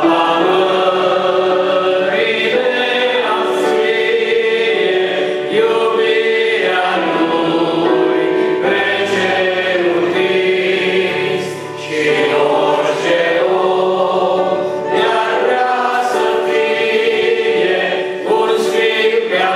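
A man singing a Christian song in Romanian into a microphone, holding long notes.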